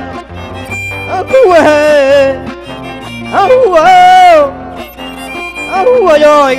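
Violin playing two sliding melodic phrases over a steadily strummed acoustic guitar, a live instrumental interlude between sung lines of Panamanian folk music.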